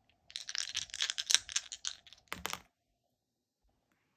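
Astrology dice rattling and clattering on a table: a quick run of clicks for about a second and a half, then a short clatter as they come to rest.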